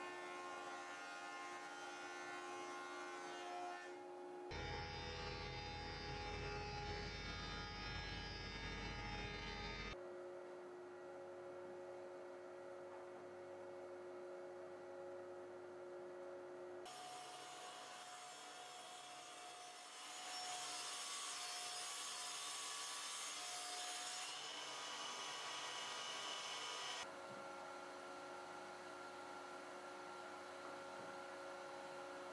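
Table saw running and ripping long wooden boards, heard in several short shots that cut abruptly from one to the next, each with its own steady motor tone. A deeper rumble fills the stretch from about five to ten seconds in.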